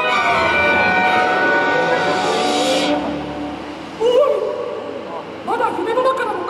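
Orchestral show music with strings and brass, playing loudly and then ending about halfway through; about a second later a high-pitched voice speaks, with more speech near the end.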